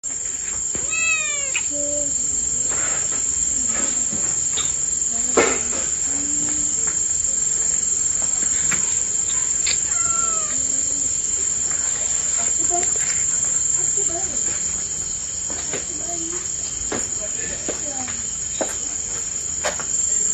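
Crickets chirring steadily in the night, a continuous high-pitched trill that is the loudest sound throughout. A kitten mews a few times over it, with a falling call about a second in and another around ten seconds in.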